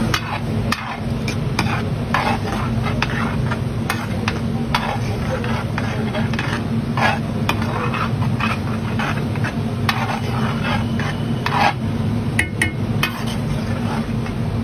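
Metal ladle and spatula scraping and clacking against a large flat tava griddle as vegetables and masala are stirred and mashed, with a few ringing metal clinks near the end. A steady low hum runs underneath.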